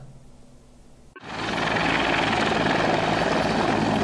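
A helicopter running, heard as a steady loud noise that cuts in abruptly about a second in.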